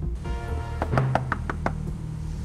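Knuckles rapping on a wooden door: a quick run of about seven knocks.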